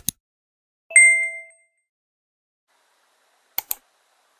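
Two keyboard keystrokes, each a quick double click, one at the start and one near the end, with a short, bright ringing ding about a second in.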